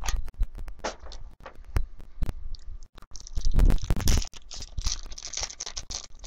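Foil trading-card pack wrappers crinkling and tearing as they are handled and ripped open by hand, with scattered crackles and a louder rip a little past halfway.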